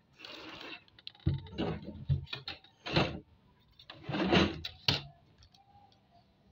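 Crumpled paper pattern rustling and crinkling under the hands as a tape measure and ruler are moved across it. A few sharp taps and clicks come in between, the sharpest just before the end.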